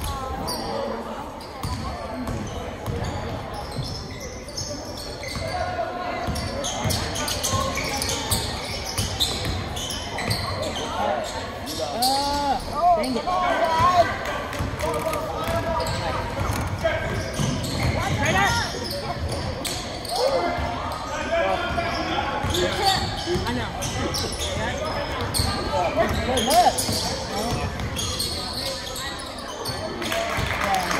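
Basketball dribbled and bouncing on a hardwood gym floor, with sneakers squeaking and people's voices, all echoing in a large gym.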